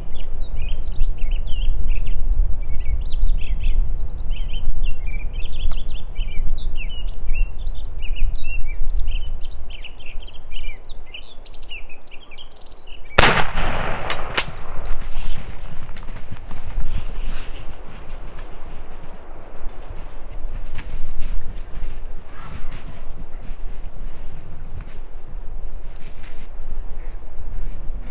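Small birds chirping rapidly while the hunter moves, then a single shotgun blast about halfway through, the shot fired at a Merriam's turkey tom, with a quick echo. Rustling and footsteps in the brush follow.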